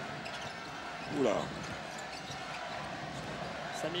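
Steady crowd noise from a packed basketball arena, with a basketball being dribbled on the hardwood court.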